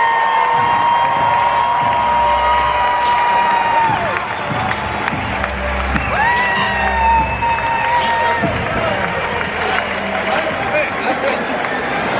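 A girl's long held yell through a cupped hand, ending about four seconds in, then a second, shorter held yell a couple of seconds later, over the steady noise of a ballpark crowd.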